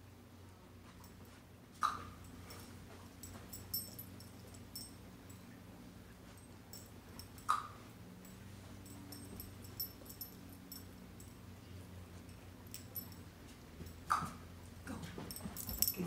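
A dog giving three short whimpers, a few seconds apart, with light clicks in between.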